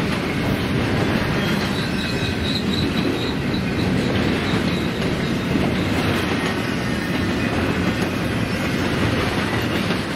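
Double-stack intermodal container well cars of a freight train rolling past: a steady rumble of steel wheels on rail with clickety-clack over the joints, and a faint high wheel squeal between about two and four seconds in.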